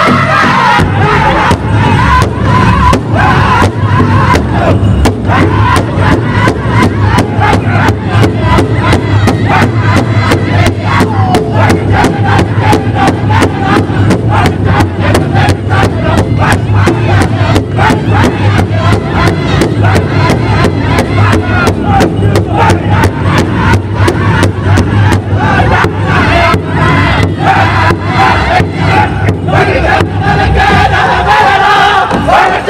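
Large powwow drum struck in unison by a seated drum group at a steady beat, with the men singing a traditional powwow song over it; the voices come through most strongly near the start and again near the end.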